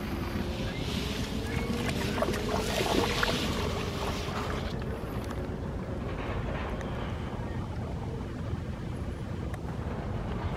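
A North American beaver slips off the shoreline rocks into the river with a leafy branch in its mouth. Water splashes and sloshes for a few seconds early in the clip, then laps more quietly as it swims off, over a steady low rumble.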